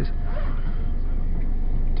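Steady running rumble of a moving electric passenger train, heard from inside the carriage.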